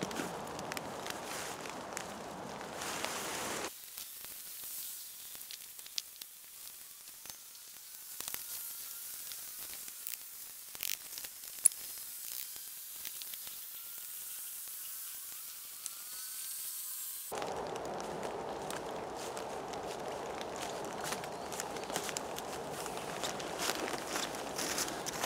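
Sped-up rustling and footsteps in dry leaf litter while a tarp is pitched, heard as a fast crackling chatter of small clicks. For most of the middle it drops to a quieter hiss before the rustling returns.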